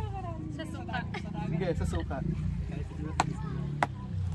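Ping-pong ball bouncing on the game table: two sharp ticks about two-thirds of a second apart near the end, over background voices and a steady low rumble.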